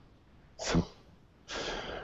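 A person breathing between turns of speech: a short puff of breath a little over half a second in, then a longer, hissy intake of breath from about a second and a half that leads straight into speech.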